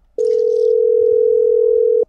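Telephone ringback tone over the line: one steady ring of about two seconds that starts shortly in and cuts off sharply, the sign that the dialled phone is ringing at the other end.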